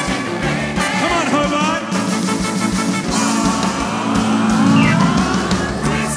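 Live band and gospel choir playing loudly, with a lead line that bends and slides in pitch, most clearly a long rising slide in the second half.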